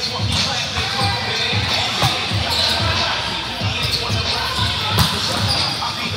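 Busy indoor volleyball hall: balls struck and bouncing on the hard sport-court floor with an echo, over the hubbub of players' voices. A sharp ball hit about two seconds in, and a louder one about five seconds in.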